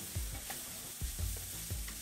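Chopped red onion and green chilli sizzling in oil in a nonstick frying pan, stirred with a spatula, with a few light taps and scrapes.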